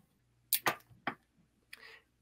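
Three short, sharp clicks about half a second to a second in, followed by a faint hiss near the end.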